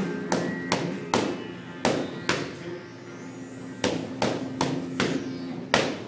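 Boxing gloves punching focus mitts in quick combinations, about eleven sharp smacks in runs of two to four, with a pause of about a second and a half near the middle. Background music plays underneath.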